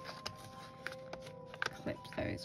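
Stiff paper tags and card pieces in a handmade junk journal handled by hand: a few short rustles and light taps. Quiet background music with long held notes plays underneath.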